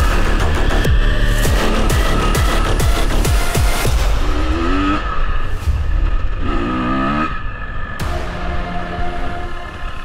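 An enduro motorcycle engine revving hard on a dirt track, rising in pitch twice in the middle, mixed with background music.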